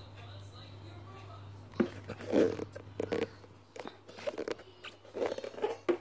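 Plastic clicks and knocks as a replacement filter is pushed into the water tank of a Tommee Tippee Perfect Prep machine and the parts are handled. A steady low hum is heard for the first second and a half or so.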